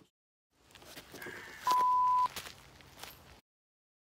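A single flat, steady beep about half a second long, an edited-in bleep tone, heard over faint clatter of metal dirt bike parts being handled on plywood. The sound cuts to dead silence near the end.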